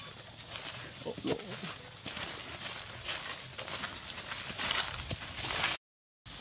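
Long-tailed macaques scampering and scuffling over dry fallen leaves: irregular rustling and crunching of the leaf litter, with a brief monkey call about a second in. The sound cuts off abruptly just before the end.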